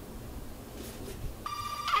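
A telephone ringing: a steady electronic ring tone with even overtones that starts about one and a half seconds in, after faint room tone.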